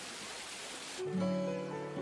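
Steady rush of a waterfall. About a second in, louder plucked guitar music with held notes comes in over it.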